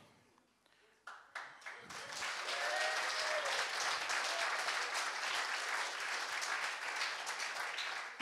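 Audience applauding, starting about a second in and settling into a steady clapping that runs until the speaker resumes.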